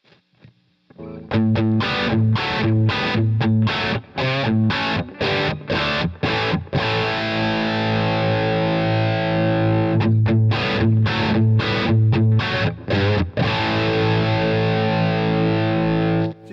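Electric guitar played through a high-gain Egnater Boutikit 20-watt 6V6 tube amp head. About a second in, a run of short, choppy distorted chords starts, about three a second, followed by a held ringing chord. Then come more short chords and another held chord. The amp's density control is turned down during the playing to trim the low end.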